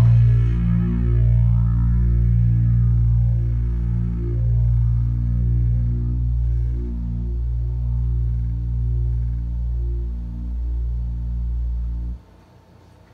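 Electric bass letting one dissonant low note or chord ring through an Electro-Harmonix Deluxe Bass Big Muff fuzz, a Bass Clone chorus and an MXR Phase 95 phaser. The result is a distorted drone with a slow, sweeping phaser swirl in its upper overtones. It slowly fades and then is cut off suddenly near the end.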